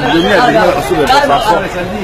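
Speech only: several people talking at once, overlapping voices.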